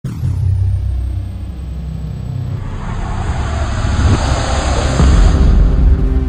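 Cinematic logo-intro sound effect: a deep rumble under a whooshing swell that builds louder toward the end.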